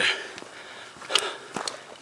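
A hiker's footsteps and breathing on a dry dirt trail: a few short scuffs and a quick sniff over quiet outdoor background.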